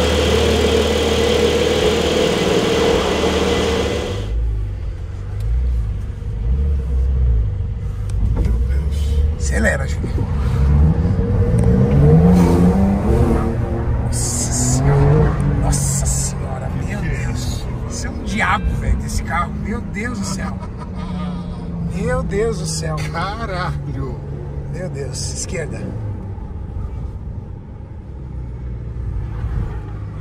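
Porsche 911 GTS twin-turbo flat-six engine running as the car pulls out, then heard from inside the cabin pulling away and accelerating, its pitch rising steadily about seven seconds in and again a few times later.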